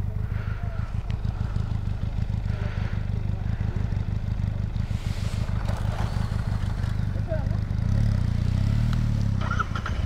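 Motorcycle engine running at low revs, a steady low rumble that swells a little near the end.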